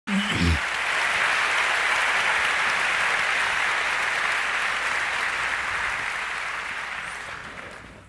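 Audience applauding: steady, dense clapping that slowly dies away near the end.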